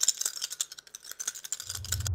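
Small plastic two-colour counters clattering in a rapid run of sharp clicks as they are shaken and dropped onto a glass tabletop. A low rumble comes in near the end.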